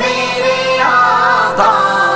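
Islamic devotional singing (a naat): a male voice holding a wavering melodic line over layered backing vocals.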